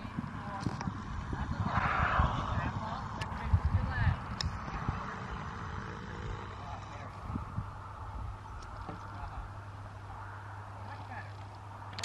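Muffled hoofbeats of a horse cantering on arena sand, irregular low thuds mostly in the first half, with faint distant voices. A low steady hum comes in during the second half.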